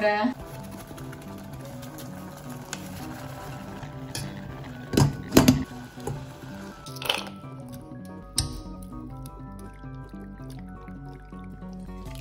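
Light background music with a melody over a repeating bass line. A few short, loud sounds break through it about five and seven seconds in.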